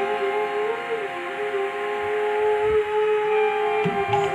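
Harmonium sustaining steady chord tones under a long, gently wavering melody line in devotional kirtan music. The drumming mostly drops out, leaving a few soft drum strokes in the second half.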